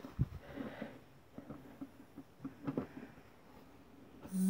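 Faint, scattered taps and clicks of hands picking up and setting down stamping supplies on a craft table.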